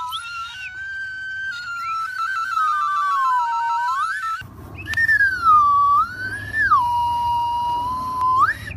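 A tin whistle and a toy plastic slide whistle blown together as mock bird calls: high whistle tones gliding up and down, with a fast two-note warble near the middle. The sound breaks off briefly about halfway through, then a long swooping glide settles on a steady note.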